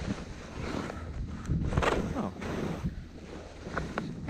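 Wind buffeting the body-mounted camera's microphone during a ski descent, a steady low rumble, with the hiss of skis running through fresh snow.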